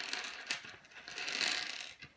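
A light click about half a second in, then a soft rustle that fades away near the end.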